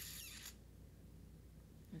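Near silence: a faint low steady hum of room tone, with a brief hiss in the first half second.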